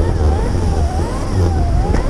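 Wind buffeting the microphone of a camera on a moving electric dirt bike, a heavy steady rumble, with a thin whine that wavers up and down in pitch.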